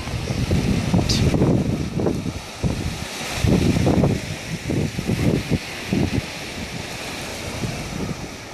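Small Baltic Sea waves breaking and washing on a sandy beach, with wind buffeting the microphone in gusts that are strongest in the first half and ease off near the end.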